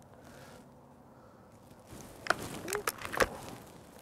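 Break-barrel air rifle (Gamo Magnum Gen 2, .22) being worked after a shot: a few sharp metallic clicks from about two seconds in, then a heavier clunk as the barrel is swung shut and locks.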